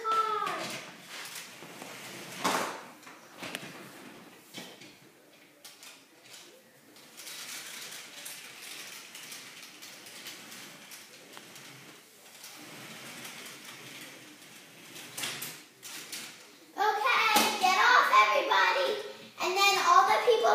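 A child's voice talking at the very start and then loudly for the last few seconds. Between them is a quiet stretch with a few faint knocks and clicks of plastic toy blocks being handled.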